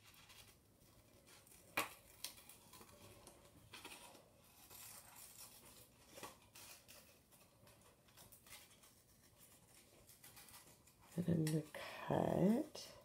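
Scissors cutting a curved shape out of a paper index card: faint, scattered snips and paper rustling, with a sharper snip about two seconds in.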